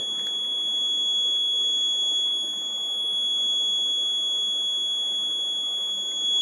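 Steady, unbroken high-pitched electronic buzzer tone with a faint hiss beneath it, sounding while the accident-detection board registers a back accident.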